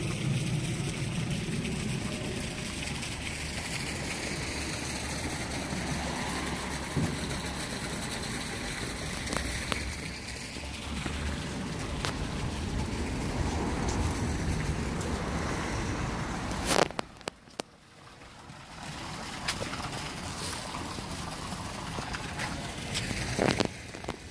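Wind buffeting the phone's microphone outdoors: a steady low rushing noise that drops out suddenly for a moment about two-thirds of the way through, then comes back.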